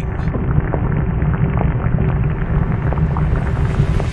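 Loud, steady low rumble with faint crackling above it, a sound effect standing in for the roar of the Sun's surface. It cuts off abruptly at the end.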